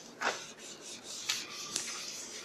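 A duster wiping chalk off a blackboard in several quick rubbing strokes. The first stroke, about a quarter second in, is the loudest.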